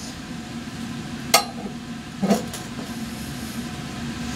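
A sharp click, with a brief ringing, about a second and a half in, and a softer knock about a second later, as a clamp is screwed tight on laboratory glassware, over a steady ventilation hum.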